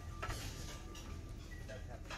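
Buffet dining room ambience: a few sharp clinks of utensils and dishes over a steady low hum and faint murmur of voices, with faint background music.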